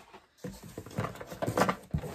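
Hands rummaging through packaged cosmetics in a cardboard box: irregular crinkles of plastic and card and small clicks, starting about half a second in.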